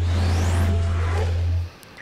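Television news transition sound effect: a rising whoosh over a steady low bass drone, cutting off sharply about 1.7 seconds in.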